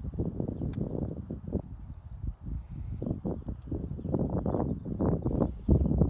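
Wind buffeting the microphone: an uneven low rumble that grows louder near the end, with one faint click about a second in.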